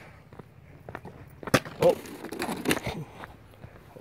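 Footsteps and shoe scuffs on a granite slab, with a few sharp knocks and clicks, the loudest about one and a half to two seconds in.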